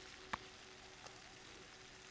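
Very quiet background: faint hiss and a thin steady hum, with a single short click about a third of a second in.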